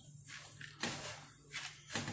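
A spatula stirring a thick mix of oats and seeds in a plastic bowl: a few faint rustling scrapes, the clearest about a second in and just before the end. The mixture is getting heavy and hard to stir.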